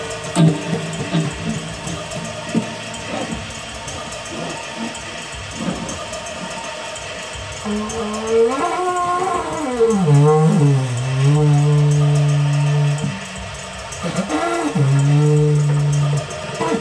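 Improvised noise music: scattered clicks and electric-guitar effect noise. About eight seconds in, a long wooden tube is blown like a horn, giving a low tone that glides up and back down and then holds steady. It breaks off shortly after and comes back near the end.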